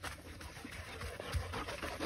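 Podenco dogs panting quietly while they play.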